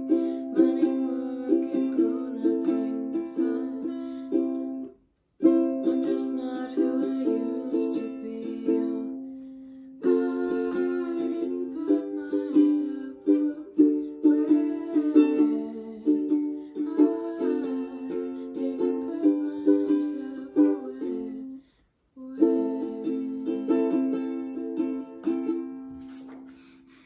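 Ukulele strummed in steady rhythmic chords. The playing breaks off into brief silence twice, about five seconds in and again a few seconds before the end.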